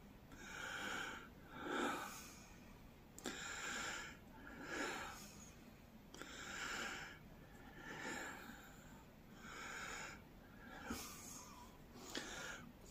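A man's faint breathing close to the microphone: four slow breaths, each an in and an out, about three seconds apart.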